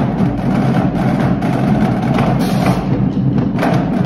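Marching drumline playing a cadence: snare drums, tenor drums and marching bass drums with crash cymbals, a dense, steady stream of strokes.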